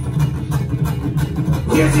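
Live folk-punk band playing between vocal lines: acoustic guitar strummed in a quick, even rhythm over upright bass and washboard. Singing comes back in near the end.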